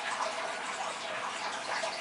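Turtle tank filter running, its water falling back into the tank as a steady rush of splashing.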